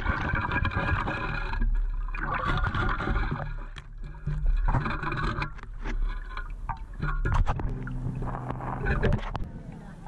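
Water sloshing, with gravel and shells rattling and clicking in a metal-detecting sand scoop's mesh basket as it is sifted in lake water. It is heard through a camera mounted on the scoop.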